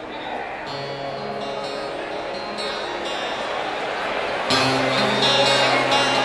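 Acoustic guitar played solo live through a PA, chords strummed and left ringing, with a new chord about a second in and a louder one struck about four and a half seconds in.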